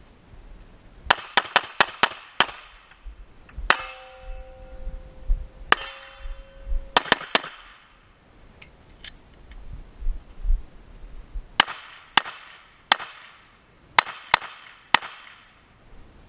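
Pistol shots fired in fast strings during a timed drill: a quick string of about six shots about a second in, then single shots each followed by a steel target ringing, then more pairs and triples of shots near the end.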